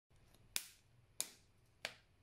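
Homemade pop-it made from a plastic placemat, its dimples popped one after another: three sharp clicks, evenly spaced about two-thirds of a second apart.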